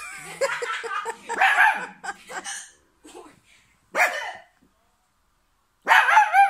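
Miniature pinscher puppy barking and yelping in short, sharp calls: a quick run of them in the first two and a half seconds, a single bark at about four seconds, then a pause and another loud bark near the end.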